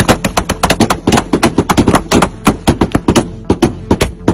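Loud rifle gunfire: dozens of shots in rapid, uneven bursts, several a second, with short gaps between the volleys.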